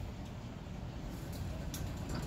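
Low steady background rumble with a faint click near the end; no clear machine sound stands out.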